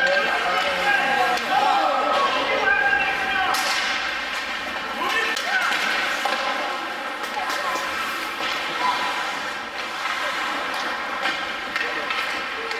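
Ice hockey rink during play: many voices of spectators and players shouting and chattering, echoing in the arena, with a sharp crack about three and a half seconds in from a hockey stick striking the puck.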